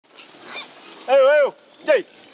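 A man calling pigs with loud, high-pitched "yeah" calls: one long call about a second in, then a short falling one at the end.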